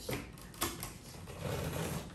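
Packing tape on a cardboard box being slit and scraped open with a small blade, a scratchy tearing with a few sharp clicks against the cardboard.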